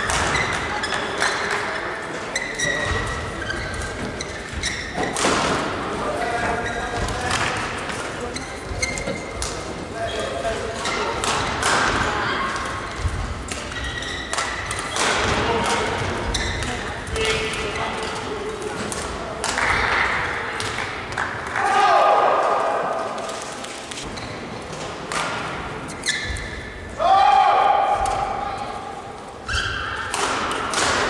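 Badminton singles rallies in a large hall: repeated sharp racket strikes on the shuttlecock, with shoes squeaking on the court floor. Two loud shouts with falling pitch break out, about two-thirds of the way through and again near the end.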